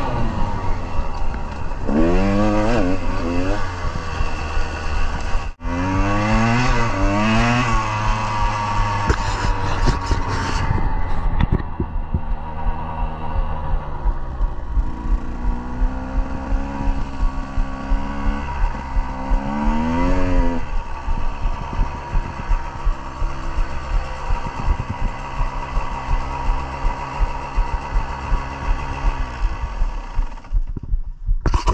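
KTM 150 two-stroke dirt bike engine revving up and down hard for about the first ten seconds, with wind on the microphone, then running at low revs with a regular pulsing beat and one more short rev about twenty seconds in.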